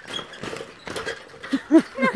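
Footsteps knocking on the wooden slats of a suspension bridge, several uneven steps. Near the end comes a woman's short frightened cry of "no".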